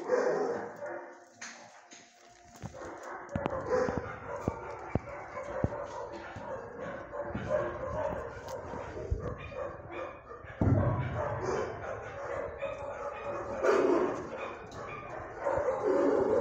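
Dogs barking repeatedly in a shelter kennel block, with the sharpest barks about three and a half seconds in, near the two-thirds mark and just before the end.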